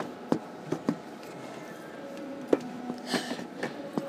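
Steady background hum of a large store, broken by a few sharp clicks and knocks from handling, with faint distant voices near the end.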